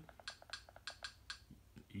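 A quick, irregular run of faint small clicks, about a dozen in the first second and a half, with a couple more near the end.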